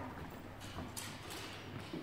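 Faint footsteps of fencers' sports shoes on a wooden parquet floor: a few light, uneven knocks as they step back to reset between exchanges.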